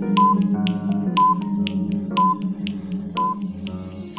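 Countdown-timer music: rapid ticking over a sustained low tone and shifting notes, with a short high beep once a second, four times.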